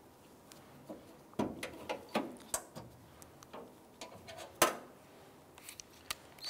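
Scattered light clicks and knocks of metal latch rods and plastic retainer clips being worked loose and handled inside a pickup's tailgate, with a quick run of clicks in the first half and one sharper knock about two-thirds through.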